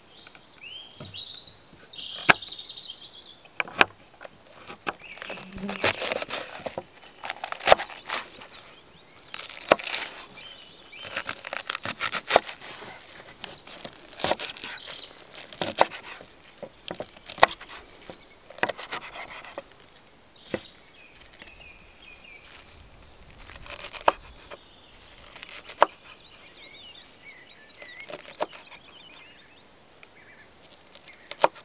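Small knife chopping carrot and raw cabbage on a wooden cutting board: sharp, irregular knocks of the blade hitting the board, with crisp crunching as it cuts through the cabbage leaves.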